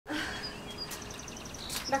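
Faint bird chirps: a few short high notes, then a quick even run of chirps, over a low background hiss. A woman's voice begins right at the end.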